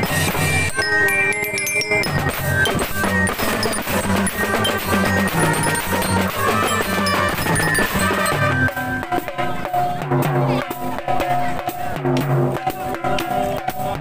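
A marching drum band playing a tune: a steady beat of bass drum, other drums and cymbals under a melody on marching glockenspiel and trumpets.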